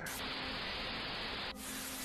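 TV-static sound effect: a steady hiss that cuts off suddenly about a second and a half in.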